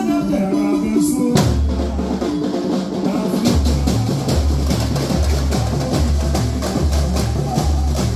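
Samba enredo played by a samba school band: a pitched melody at first, then about a second and a half in the percussion section comes in with a loud hit. From about three and a half seconds deep bass drums beat a steady samba rhythm under it.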